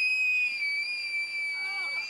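A woman's long, high-pitched scream, held for about two seconds with its pitch sagging slightly before it breaks off. It is a dramatized scream of someone falling from a cliff.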